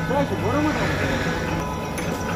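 Faint voices talking over a steady low mechanical hum.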